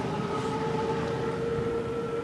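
Small electric ride-on utility vehicle moving along pavement: its drive motor gives a steady, even whine over a rough low rumble from the wheels.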